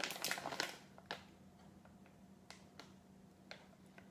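Light clicks and scrapes of a small measuring spoon against a drinking glass as sea salt is measured in: a quick cluster in the first half-second, then a few single taps.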